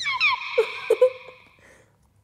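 A short edited-in cartoon sound effect: a quick falling glide over a held high ringing tone, with a few short blips around the middle, fading out about a second and a half in.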